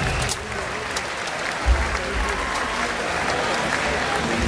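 Large audience applauding after a song ends, a steady wash of clapping, with a short low thump from the stage about a second and a half in.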